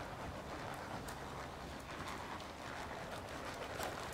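Faint, irregular hoofbeats of a pony trotting on soft indoor-arena footing, with a low background hum.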